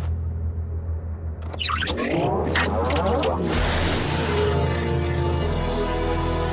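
Cartoon score over a steady low drone, joined from about a second and a half in by a warbling electronic sci-fi effect as the villains' tech-wrecker device powers up.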